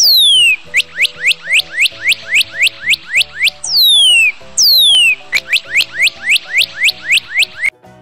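Northern cardinal singing: a long down-slurred whistle followed by a fast run of short down-slurred notes, about six a second, then the phrase again with two long whistles and another fast run that stops just before the end. Background music plays underneath.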